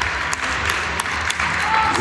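Audience applauding as a ballroom dance heat ends, with scattered voices among the clapping.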